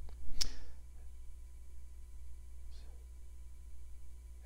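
A single sharp click about half a second in, then a low steady hum.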